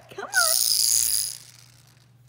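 A small plastic puppy toy rattling for about a second, shaken in front of the puppy to get it to play.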